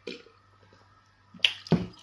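Close-miked drinking of water from a glass: a swallow at the start, then a sharp wet mouth click and a heavier swallow close together near the end.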